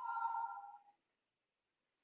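Brief, faint ringing of a drinking glass lightly knocked, dying away within about a second.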